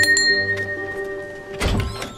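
A small door bell by a cottage front door struck once by hand, its clear tone ringing on for about a second and a half before fading. A thunk follows near the end as the door opens. Music plays underneath.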